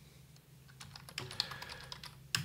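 Computer keyboard typing: a quick run of keystrokes, starting about a second in, spelling out one word.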